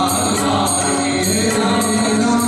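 Male voices singing a Marathi devotional song, a lead singer with a small chorus, over sustained accompaniment and a steady beat of about two strokes a second.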